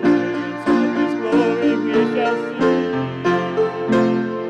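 A gospel hymn played on piano, accordion and upright bass, with sustained chords over a steady beat.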